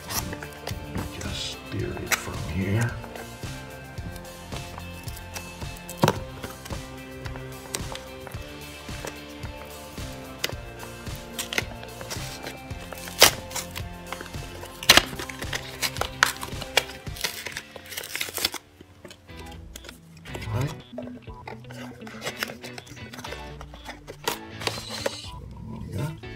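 Background music over the clicks and rustles of a cardboard retail box being handled and its paper seal torn open, with a few sharper clicks.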